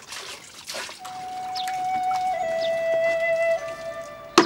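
Water splashing and pouring in a bowl for about the first second. Soft background music then comes in with a long held note that grows louder.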